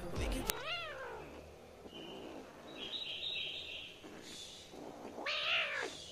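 Kitten meowing twice during play-fighting, each a short call that rises and falls in pitch: one about a second in, a louder one near the end.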